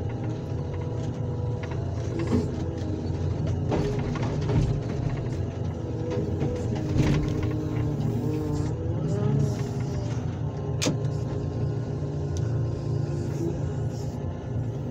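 An excavator's engine runs steadily under hydraulic load, with a hydraulic whine that wavers and shifts in pitch as the grapple pries a car engine loose from below and lifts it out. A few metal knocks come through, the sharpest late on.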